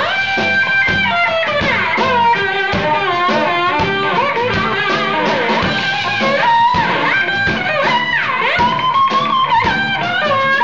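Electric guitar played live through an amplifier, a lead line full of bent and sliding notes, over a band accompaniment with a steady drum beat.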